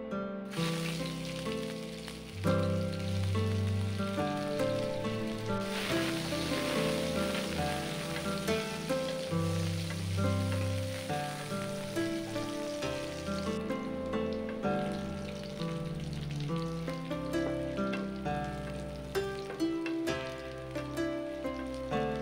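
Sliced onions sizzling in hot oil in a nonstick frying pan while being stirred with a spatula, starting about half a second in and quieter from about two-thirds through. Plucked-string background music plays throughout.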